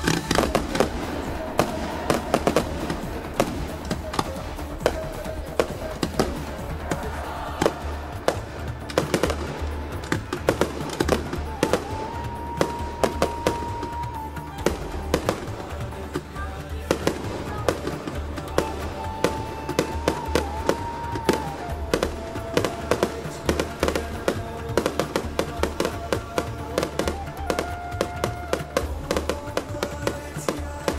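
Consumer fireworks going off: an irregular run of many bangs and crackles throughout as stars burst overhead, with music playing over them.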